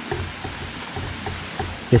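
Steady rush of a stream running close by, with faint handling noise from cord and toggles being worked on a backpack.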